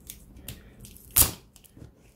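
An e-bike battery cell pack being pried and pulled out of its black plastic case: faint scraping and small clicks, with one loud crack a little past a second in as it comes loose.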